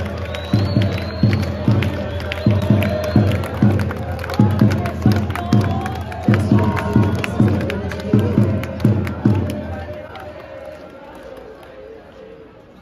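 Music from a sound system with a heavy, pulsing bass line, about three deep notes a second in short runs, over a cheering, shouting crowd. The music fades out near the end.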